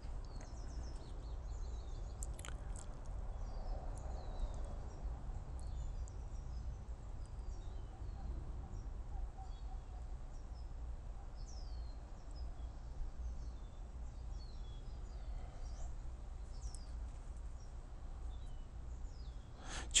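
Small birds chirping here and there, short high calls scattered throughout, over a steady low background noise.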